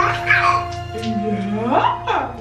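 A four-month-old baby giving short pitched cries, one falling at the start and a rising-then-falling wail near the end, over background music with steady held notes.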